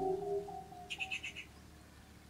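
Last notes of a soft keyboard tune dying away, then a bird giving a quick series of about five short high chirps about a second in.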